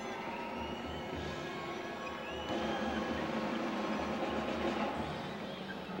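Steady arena crowd noise during live play, with faint sustained tones running through it. It grows a little louder about halfway through.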